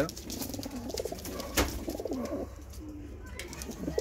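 Punjabi pigeons cooing in a cage, low and wavering, with one sharp click about a second and a half in.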